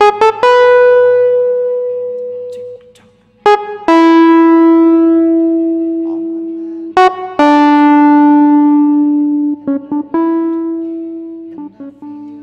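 Hohner Pianet N electric piano playing a slow line of single held notes, a new note struck about every three to four seconds and each fading away before the next.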